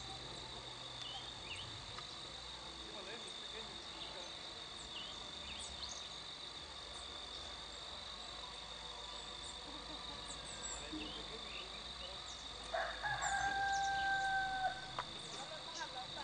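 A rooster crows once, about thirteen seconds in: a single held call of about two seconds. Under it runs a steady high-pitched insect drone.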